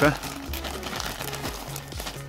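Glossy wrapping paper and a plastic bag crinkling and rustling as they are torn open and pulled apart by hand. Quiet background music with steady held notes plays underneath.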